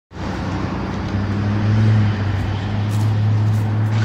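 Outdoor street ambience dominated by a steady low hum, which gets louder about a second in.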